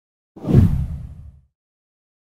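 A deep whoosh transition sound effect: one rush that swells about a third of a second in and fades away within about a second.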